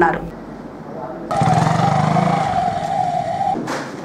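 A steady high tone lasting about two seconds, starting abruptly, with a low pulsing buzz beneath it, ending in a short noisy burst.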